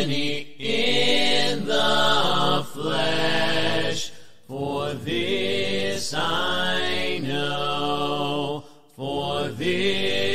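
A cappella hymn singing with no instruments: long held, sliding sung phrases, broken by two short pauses for breath about four and nine seconds in.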